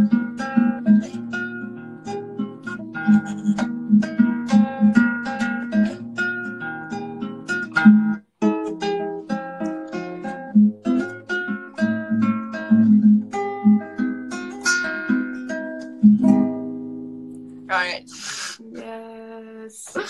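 Acoustic guitar playing a song in picked chords and notes, with a brief break about eight seconds in. The playing stops about sixteen seconds in, and a short laugh follows near the end.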